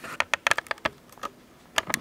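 Custom Hi-Capa-type gas blowback airsoft pistol clicking sharply as it is worked by hand. There is a quick cluster of clicks in the first second and two more near the end.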